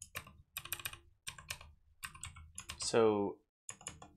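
Typing on a computer keyboard in quick bursts of keystrokes, with a brief vocal sound falling in pitch about three seconds in, louder than the typing.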